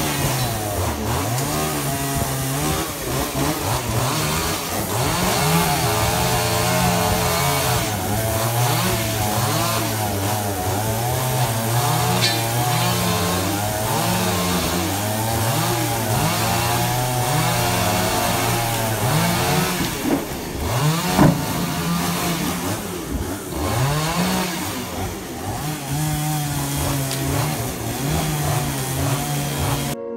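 Chainsaw running and cutting up a fallen tree, its engine revving up and down over and over.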